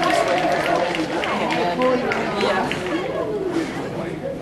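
Overlapping talk of several people in a large hall, with no single voice standing out.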